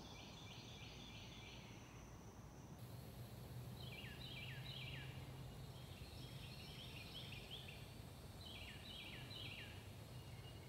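A songbird singing faintly: runs of four or five quick repeated notes, each note dropping in pitch, sung several times with short pauses between. A steady high hiss sits behind it from about three seconds in.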